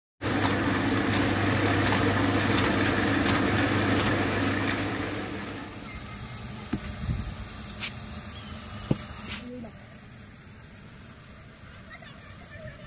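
A loud, steady machine drone that fades out about five seconds in. Then come four or five sharp wooden knocks as sawn log rounds are handled and set down on one another.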